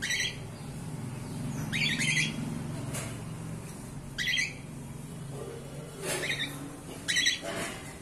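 Cockatiel calling: five short, loud, high calls, spaced a second or two apart.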